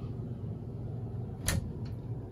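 A cabinet door closing with a sharp click about one and a half seconds in, with a fainter click just after, over a steady low hum.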